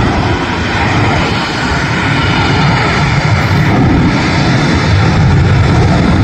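Jet engines of a twin-engine airliner at takeoff thrust during the takeoff roll: a steady, loud roar.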